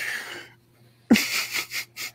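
A person's breathy sounds close to the microphone: a short hiss of breath, then about a second in a sudden voiced sound that falls in pitch, followed by a few quick breathy puffs.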